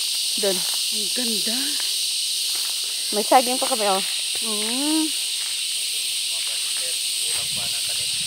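A steady, high-pitched insect drone in tropical vegetation, unbroken throughout, with short snatches of voices over it in the first five seconds.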